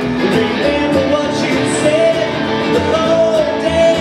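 Live band: a man singing over a strummed acoustic guitar and an upright double bass, with a steady rhythm.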